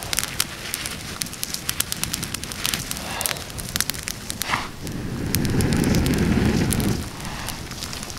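Small campfire of damp twigs and sticks crackling and popping as the damp wood just starts to catch. A louder low rushing sound runs for about two seconds past the middle.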